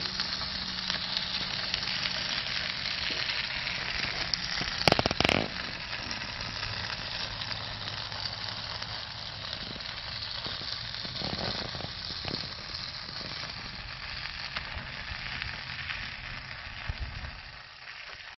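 Chicken wings and legs sizzling on the grates of a charcoal-fired Weber kettle: a steady hiss, with one sharp knock about five seconds in. The sizzle fades away near the end.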